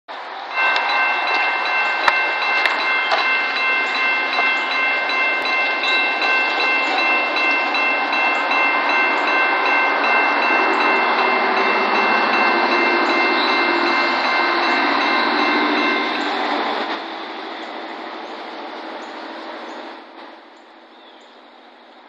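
Railroad grade-crossing warning bell ringing steadily as the crossing activates and the gate arms come down, stopping suddenly about 16 seconds in once the gates are lowered. A quieter background sound carries on after it.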